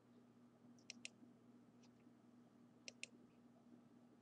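Faint computer mouse clicks over near silence: a quick pair about a second in, a softer single click, and another quick pair about two seconds after the first.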